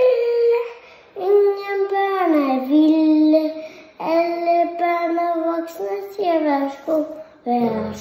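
A young child singing unaccompanied, in several phrases of long held notes, with a slow slide down in pitch in the second phrase and shorter falling notes near the end.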